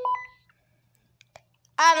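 Cobra walkie-talkie giving a short electronic beep that steps up in pitch, then quiet with a couple of faint clicks.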